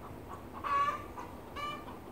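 Backyard chickens squawking twice, about a second apart: the flock is still agitated after a fox attack.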